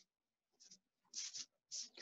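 Near silence, with three or four faint, short hissing rustles.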